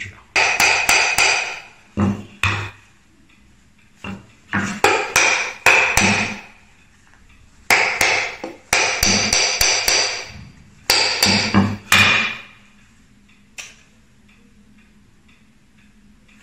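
Hammer striking an old steel chisel in bursts of rapid blows with a bright metallic ring, pausing between bursts, to knock the blade loose from its handle; it has rusted in and won't come free easily.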